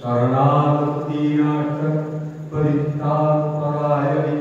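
A solo male voice chanting a Hindu devotional mantra in long, drawn-out sung notes. There are two phrases, with a brief breath about two and a half seconds in.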